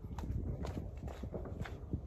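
Footsteps on a hard surface, about two steps a second, over a steady low rumble on the phone's microphone.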